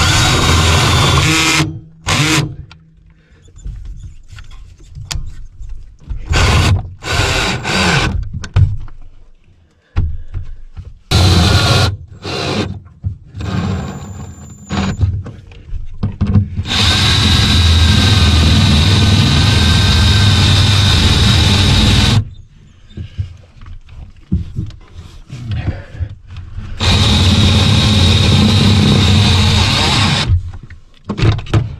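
Cordless drill running in repeated bursts at a steady pitch as the new RV water pump is fastened to a wooden mounting board. Several short bursts come first, then a long run of about five seconds in the middle and another of about three seconds at the end.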